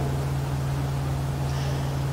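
Steady low electrical hum with a light hiss over it: the room and sound-system tone during a pause in speech.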